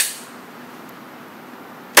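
A single pistol shot from a .45 ACP Glock right at the start, its report ringing out briefly in the indoor range, then only the range's steady background hum.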